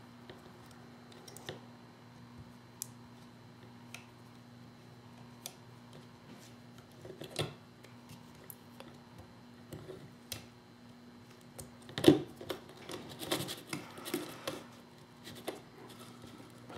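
Small clicks and taps of hands handling a paintball marker's frame, hose and small parts, with a denser, louder clatter of clicks and rustling about twelve seconds in. A faint steady hum sits underneath.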